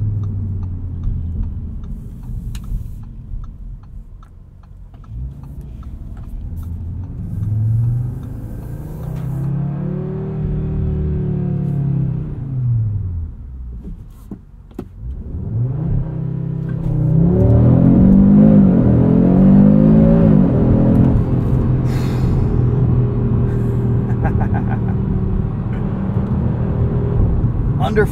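Audi RS 3's 2.5-litre turbocharged inline-five heard from inside the cabin, first revving up and down while driving. About fifteen seconds in, a launch-control start follows: the loudest, full-throttle run, its pitch climbing through several quick dual-clutch upshifts, before it settles into a steady note.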